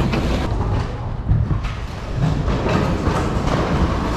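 Rustling and muffled knocks of handling as a plush toy is stuffed into a plastic bag, over a steady low rumble.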